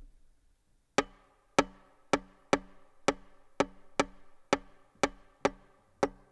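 Violin played as percussion at the start of a tango: after about a second of quiet, sharp rhythmic strikes on the strings come roughly twice a second in an uneven tango pattern, each ringing briefly.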